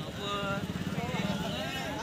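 Indistinct voices of bystanders talking over a continuous low rumble.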